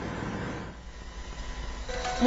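A quiet, steady low hum with a few faint steady tones above it.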